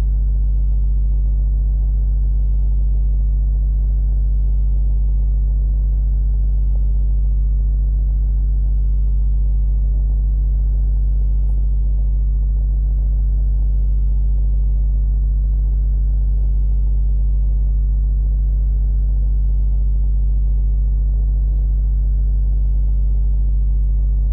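Steady low electrical hum with a faint buzz of overtones, unchanging throughout and about as loud as the narration. It is background noise in the recording chain, not from anything shown on screen.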